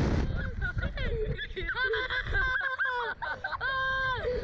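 Two boys laughing and shrieking in high, wavering cries while flung about on a slingshot thrill ride, with a rush of wind on the microphone right at the start.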